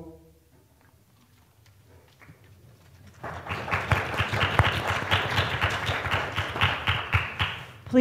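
A choir's closing chord cuts off at the start, then a short near-silence. A congregation applauds from about three seconds in until just before the end.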